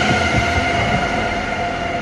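A sudden, loud dramatic sound-effect hit on a film soundtrack, marking a shock: a dense sustained noise with several steady high tones, slowly fading.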